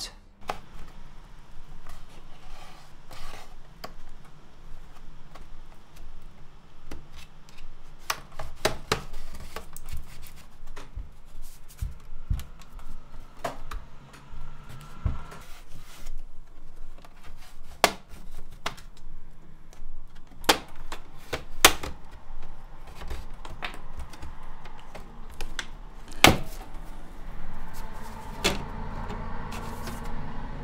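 Plastic bottom cover of an MSI Creator 15 OLED laptop being pried off with plastic tools, with irregular sharp clicks and snaps as the clips come loose and the case is handled.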